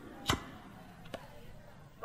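A quiet break in a house DJ mix: a fading tail with two sharp percussive clicks, one about a third of a second in and a fainter one just past a second.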